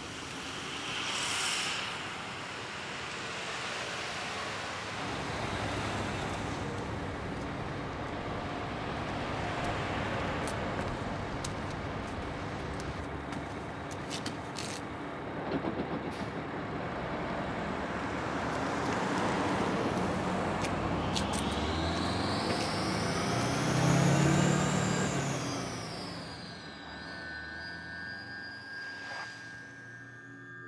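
City bus and street traffic noise. A short hiss of bus air brakes comes about a second in. Steady traffic follows, with a vehicle growing loud and passing, its pitch rising then falling, near the end.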